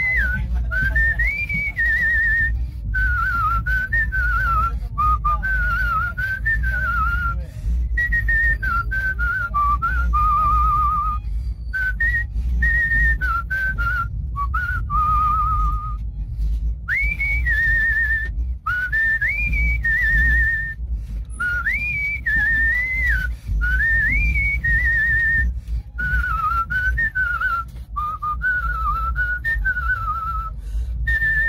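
A man whistling a melody through pursed lips, phrase after phrase with notes that glide up and warbling trills, over a steady low rumble.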